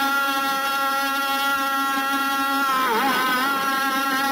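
A man's voice holding one long sung note in a soz chant, steady in pitch, with a brief dip and return about three seconds in.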